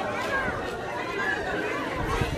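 Background chatter: several people talking at once, the words indistinct.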